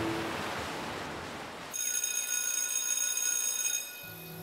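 After a fading hiss, an electric bell rings steadily for about two seconds, starting suddenly and stopping shortly before the end.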